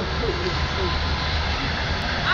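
Steady low rumble and hiss, with faint voices in the background.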